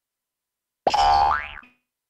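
Silence, then about a second in a short sound effect with a pitch that glides upward, lasting under a second before it fades.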